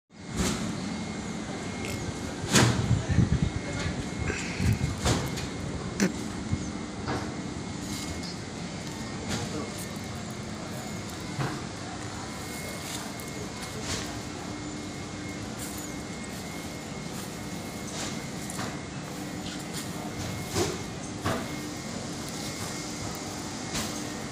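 Background voices talking over a steady hum, with scattered knocks and clatter that are loudest in the first few seconds.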